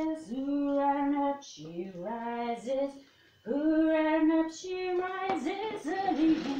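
A woman singing unaccompanied in long held notes that step up and down in pitch, with a brief pause about three seconds in.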